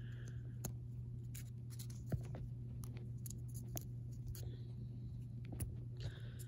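Faint scratching and scattered light clicks of fingers working at a coin holder, trying to ease a coin out by its rim, over a steady low hum.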